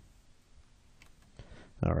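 Near silence: faint hiss with a few soft clicks, then a man starts speaking near the end.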